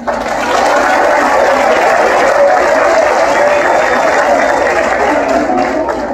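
Audience applauding in a large hall. It starts suddenly and tails off near the end.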